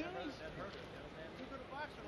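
Mostly voices: a man shouting "hear me?" from ringside, then more yelling voices over the steady noise of an arena crowd.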